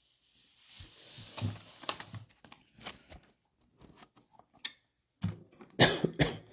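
Handling noise from a phone being handled close to its own microphone: a rustle, then irregular clicks and knocks, loudest near the end.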